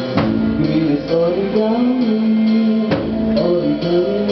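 Live band playing a song: a singer's voice over electric guitar, keyboard and drums, with a few strong beats and a light steady tick on top.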